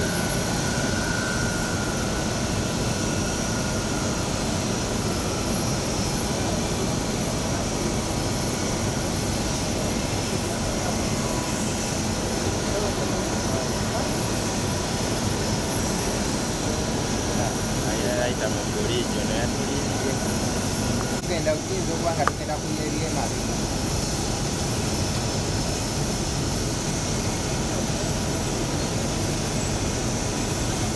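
Steady jet-turbine noise with a thin high whine running through it, unbroken throughout. A faint tone near the start slides slightly down in pitch, and a few brief faint sounds come around two-thirds of the way in.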